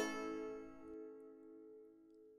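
Five-string banjo chord struck once and left ringing, its notes fading away slowly.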